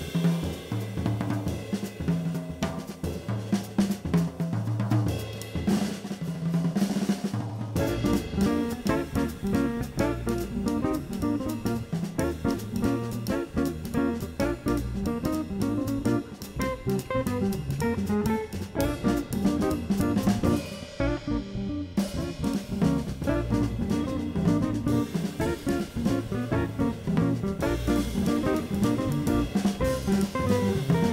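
Jazz combo of two electric guitars, six-string fretless bass and drum kit playing an up-tempo blues in B-flat, the drums prominent throughout. The band fills out about eight seconds in, and the cymbals drop out for a moment past the two-thirds mark.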